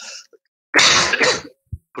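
A person clearing their throat: one short, rough burst in two parts about a second in, followed by a brief low thump just before talk resumes.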